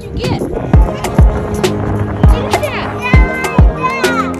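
Background music with a steady drum beat of about two hits a second, with a young child's voice heard over it near the end.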